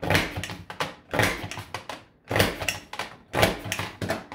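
Creative Memories Border Maker with the Woven Scallop punch cartridge being pressed down through cardstock, a sharp clunk about once a second, four times, with lighter clicks between them as the cartridge is moved along the track.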